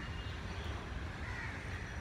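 A crow cawing faintly in the distance over steady outdoor background noise with a low rumble.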